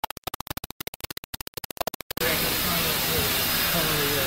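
Fast stuttering, chopped electronic music with a scratching effect, which cuts off abruptly about two seconds in. It gives way to the steady loud running noise of a two-colour offset printing press, with voices over it.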